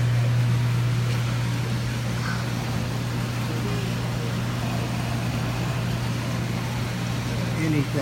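A steady low hum of machinery, with faint indistinct voices in the background.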